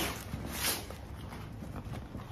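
Rustling of a waterproof dry bag's coated fabric as hands press it flat to push the air out, with brief swells at the start and just over half a second in.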